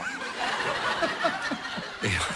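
People laughing, chuckling and snickering in short broken bursts.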